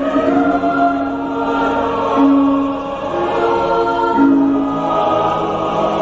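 A male solo singer and a mixed choir singing together, the voices holding long sustained notes that change pitch every couple of seconds.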